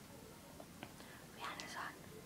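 A girl's brief, soft whisper about three-quarters of a second long, past the middle, with a small click just before it; otherwise faint room tone.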